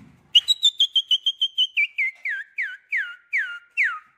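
A series of short whistled notes, fast and level at first, then slowing, with each later note sliding downward so that the series ends lower in pitch.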